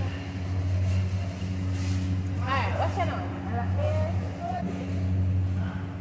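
Supermarket aisle ambience: a steady low hum with a few overtones, with brief voices about halfway through.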